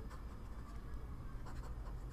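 Faint scratching of a stylus on a drawing tablet as stars are coloured in, over a low steady hum.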